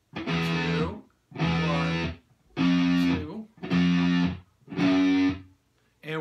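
Electric guitar playing single picked notes one at a time in a slow fretting exercise: five notes about a second apart, each held briefly and then cut off cleanly by muting the string.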